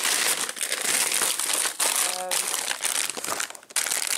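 Thin plastic carrier bag crinkling and rustling while groceries in plastic packaging are rummaged out of it.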